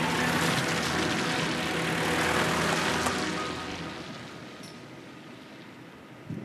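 A car passing on a wet, slushy road: its tyre hiss swells to a peak about two seconds in, then fades away over the next few seconds.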